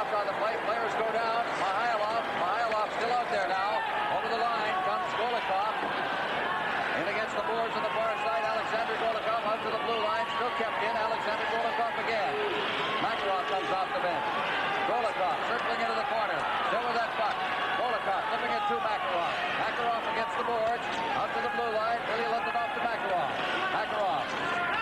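Hockey arena crowd: many voices talking and calling out at once in a steady, unbroken din.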